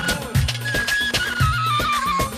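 Jordanian dabke music: an ornamented shabbaba reed-flute melody with keyboard over a steady drum beat, about one heavy stroke a second.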